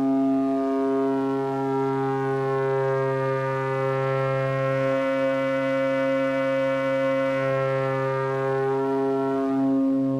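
A steady, low synthesizer drone from the AE Modular GRAINS module's digital oscillator with its wave folder being swept: the tone grows brighter and buzzier toward the middle, then mellows again near the end as the folding is turned back down. The pitch holds steady throughout.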